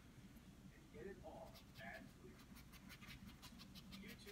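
Near silence. A faint rapid ticking, about six a second, starts about a second and a half in: a paintbrush scrubbing acrylic paint into the canvas.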